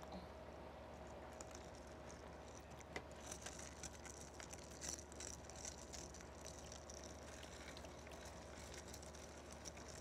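Faint sipping of a drink through paper straws, with small scattered slurps and clicks, over a steady low room hum.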